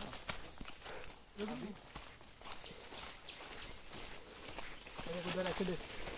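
Footsteps through forest undergrowth and leaf litter: irregular crackling and rustling of twigs and dry leaves underfoot. Quiet voices speak briefly twice, about a second and a half in and near the end.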